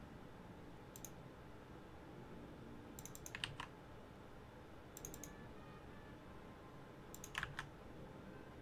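Faint typing on a computer keyboard: four short bursts of a few keystrokes each, roughly two seconds apart.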